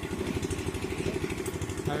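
An engine idling with a steady, rapid low chug.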